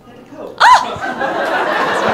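A short, high whoop from one voice, rising and falling in pitch, about half a second in and the loudest sound, then an audience laughing.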